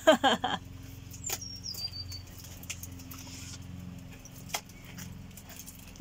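A brief voice at the very start, then quiet background with scattered small clicks and one short high whistle that falls in steps about a second and a half in.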